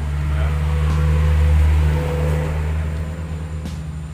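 A motor vehicle passing, its engine hum swelling to a peak about a second and a half in and then fading away.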